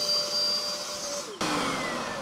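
Bissell SpotClean Pro portable carpet extractor's suction motor running with a steady whine. About a second and a half in the sound changes abruptly and the whine falls in pitch as the motor winds down.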